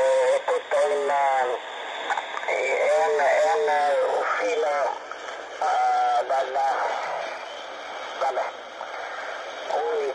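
An Italian amateur radio operator's voice received on single-sideband in the 80-metre band and played through the receiver: thin, narrow speech over a steady hiss, in spells with short pauses and a quieter, hiss-only stretch near the end.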